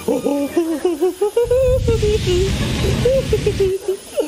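Gas torch hissing with its flame lit, starting about a second and a half in and cutting off just before the end. A man hums a wavering tune over it.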